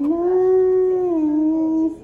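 A person's voice holding one long, steady note, stepping down slightly in pitch about a second in and breaking off just before the end.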